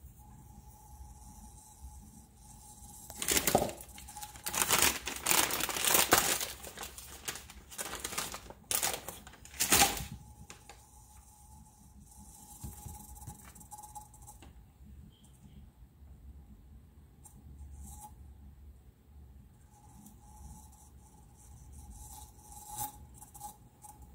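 A run of loud crinkling and tearing sounds, several bursts between about three and ten seconds in, from material being handled; otherwise only a faint steady hum, likely the cup turner's motor.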